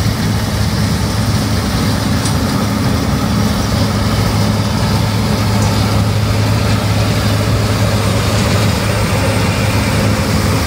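John Deere S680 combine harvester running while it harvests: a loud, steady, low engine hum with a constant rushing noise over it.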